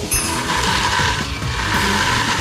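Small submersible pump at the bottom of a nearly drained drum, drawing in the last shallow water, with a steady gurgling, rattling noise.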